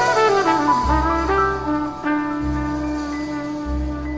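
Jazz quartet recording in which the trumpet plays a quick falling run that settles into one long held note over low bass notes. The music grows steadily quieter.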